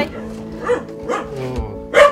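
A dog barking a few short barks, about half a second apart, over steady background music.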